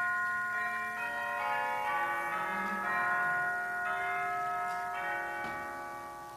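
Instrumental music: long, held, bell-like notes sounding together, with a new note joining about once a second, fading away near the end.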